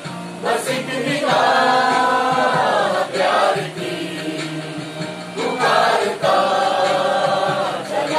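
A mixed chorus of men and women singing a Hindi film song in unison over a karaoke backing track, holding two long notes.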